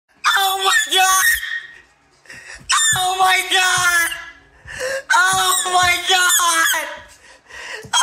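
A young man wailing in anguish without words, in three long, high-pitched cries with short breaks between them.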